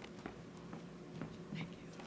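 Faint footsteps across a stage floor, a step about every half second, with quiet whispered voices in the hall.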